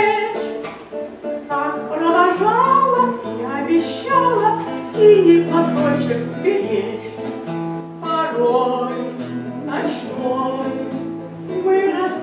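A song sung to acoustic guitar accompaniment, with a melodic vocal line over a bass line that steps from note to note.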